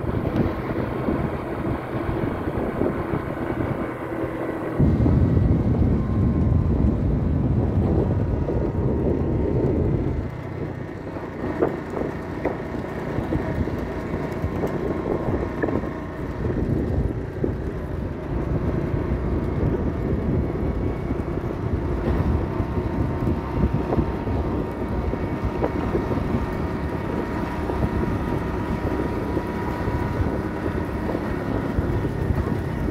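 A motor vehicle's engine running steadily while moving, with wind noise on the microphone. The sound changes abruptly about five seconds in.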